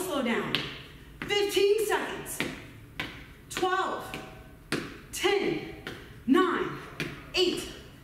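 A woman's voiced, breathy exhalations about once a second, each starting sharply and falling in pitch, in time with a repeated exercise movement, with light taps on the floor.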